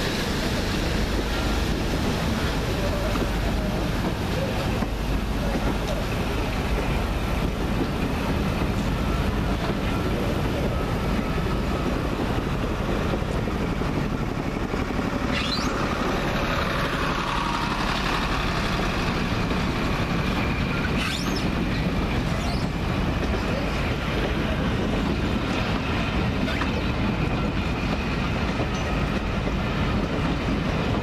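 Passenger coaches of a departing steam-hauled train rolling past at low speed, a steady rumble of wheels on the rails.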